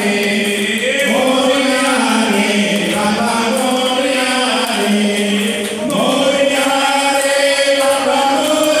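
Devotional aarti singing. A man leads the chant through a microphone and others join in, in long held, gliding notes.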